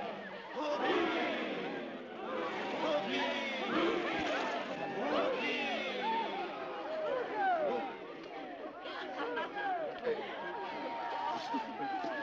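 A crowd of men and women shouting and calling out all at once, many overlapping voices with no clear words, as they haul in a fishing net.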